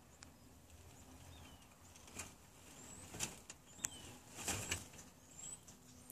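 Faint rustling and scratching in straw as hens shift about in a plastic barrel nest box, with a few faint high bird chirps in between.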